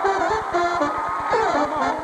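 Talk-show house band playing upbeat music with a fast, steady beat as the show goes to a break.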